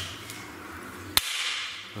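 A single sharp metallic click about a second in, as a hand tool is worked at a motorcycle's front end, followed by a soft hiss.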